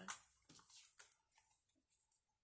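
Faint taps and light rustles of paper card pieces being set down and picked up on a tabletop: a few soft ticks in the first second and a half, then near silence.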